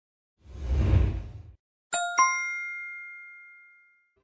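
Logo sting sound effect: a rush of noise that swells and fades over about a second, then two bright chime strikes a moment apart, the second ringing out slowly.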